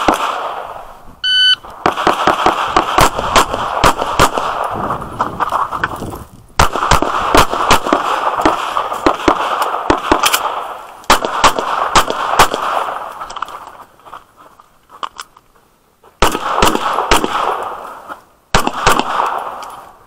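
Electronic shot-timer start beep about a second in, then strings of pistol shots in quick succession, broken by a few short pauses, the last shots a little before the end.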